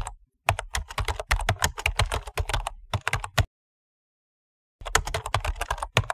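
Computer keyboard typing: a fast run of key clicks for about three seconds, a pause of over a second, then a second run of clicks near the end.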